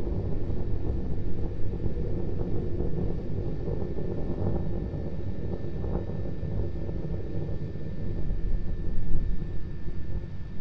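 Starship SN9's Raptor rocket engines firing as the vehicle climbs, heard from the ground as a steady low rumble with small swells.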